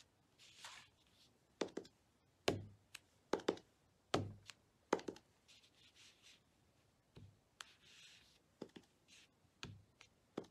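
Rubber stamp on a clear acrylic block being inked on a pad and pressed down onto cardstock, again and again: a series of irregular light knocks, some in quick pairs, with a few soft scraping rubs in between.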